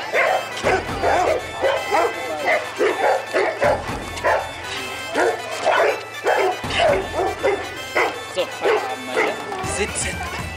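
Bernese mountain dogs barking over and over, short barks in quick succession, with music playing underneath.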